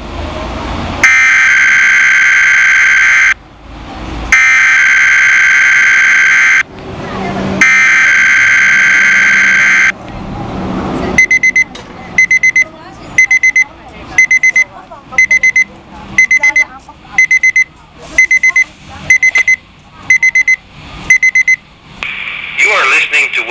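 Three EAS/SAME digital header bursts on a weather radio, harsh buzzing data tones of about two seconds each with short gaps, opening Weather Radio Canada's required monthly test. About a second after the last burst, the Oregon Scientific receiver's alert alarm starts beeping in quick clusters about once a second, set off by the test.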